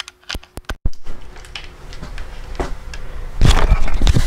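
Clicks and a brief cutout as a lavalier microphone's 3.5 mm plug goes into the camera's mic input, then rustling and loud rubbing handling noise as the clip-on Saramonic LavMicro U1A lavalier mic is handled close up.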